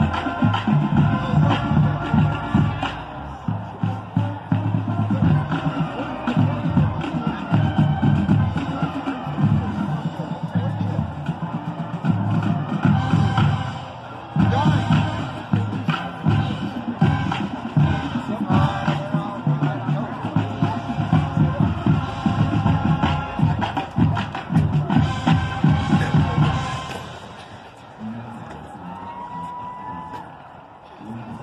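Marching band playing: brass holding chords over a steady beat of marching drums. The music thins and drops in loudness near the end.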